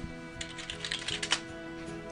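Typing on a computer keyboard: a quick run of keystrokes that stops a little after a second in.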